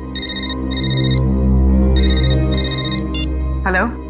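Mobile phone ringtone: two short trilling rings, a pause of about a second, then two more, after which it stops and the call is answered.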